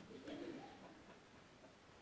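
Near silence: room tone, with a faint low murmur in the first second that fades away.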